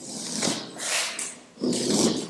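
Chalk scraping on a blackboard as lines are drawn, in three long strokes about half a second each.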